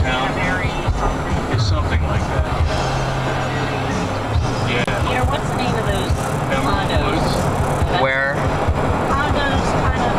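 Steady road and engine noise heard from inside a moving car, with music playing and voices underneath it.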